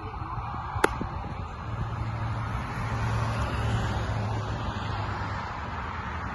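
A baseball pitch smacks into a leather catcher's mitt once, a single sharp pop about a second in, over a steady low rumble of background noise.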